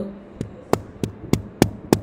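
Percussion taps, a finger striking as in clinical chest percussion, at an even pace of about three a second: six taps, the first one faint.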